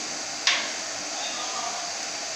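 Water boiling in a steel frying pan with spaghetti in it, a steady hiss. About half a second in there is one sharp metallic click, the fork striking the pan as the spaghetti is stirred.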